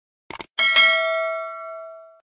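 Two quick click sounds, then, just after half a second in, a bell-like ding with several ringing overtones that fades away over about a second and a half: the subscribe-and-notification-bell sound effect of an end-screen animation.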